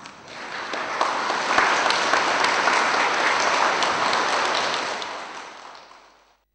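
Audience applauding, swelling over the first second, then dying away near the end.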